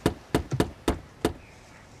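A series of sharp knocks on part of a car, about six blows in quick, uneven succession, as from a hand striking it.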